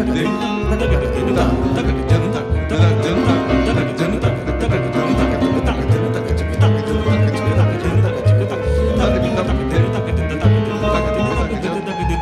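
Live jazz ensemble music: a plucked double bass playing a moving bass line under a Steinway grand piano.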